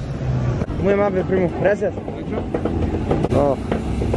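Voices talking over a low, steady engine rumble.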